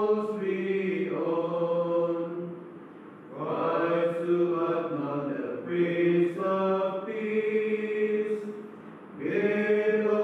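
Male voices chanting a psalm or hymn of the morning office in long, steady-pitched sung phrases. There are short breath pauses about three and nine seconds in.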